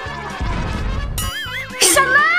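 Edited cartoon sound effects over background music: a low rumbling blast for the card's beam attack from about half a second in, then a warbling, whinny-like tone, and a short sharp whoosh just before the end.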